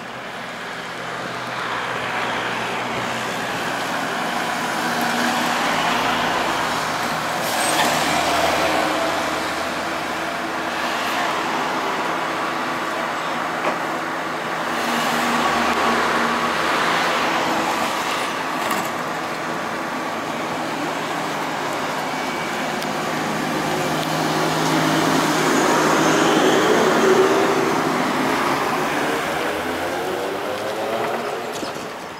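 Trolleybus running along a street amid passing traffic: tyre and motor noise that swells and fades several times as vehicles go by.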